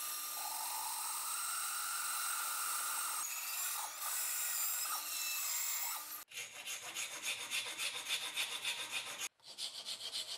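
Bandsaw running steadily as its blade cuts a small wooden block, a whine rising and then easing during the cut. About six seconds in it cuts off suddenly to the rasping strokes of a hand file on a wooden block clamped in a vise, about three strokes a second, with a brief break near the end.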